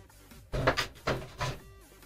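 Hand handling a fabric-topped play mat: four short rustles, about half a second to a second and a half in, over faint background music.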